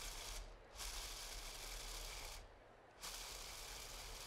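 Food processor with its blade attachment pulsing pumpkin seeds, dates and cinnamon, grinding them toward a coarse crumb. It runs in pulses of about one and a half to two seconds, cut by short pauses about half a second in and again past the two-second mark.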